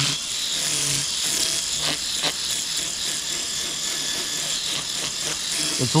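Low-voltage electric fish scaler working across a large fish's scales: a motor hum over a dense scraping hiss, the hum strong in the first second and then weaker and uneven, with two sharp clicks about two seconds in.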